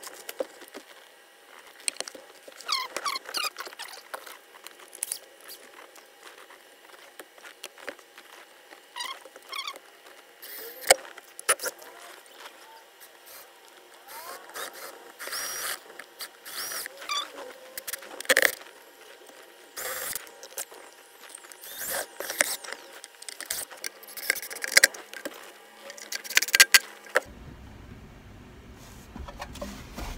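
Handling noise from work on a carpeted speaker enclosure: clicks, rattles and crinkling plastic. In the second half come several short bursts from a cordless drill pre-drilling screw holes.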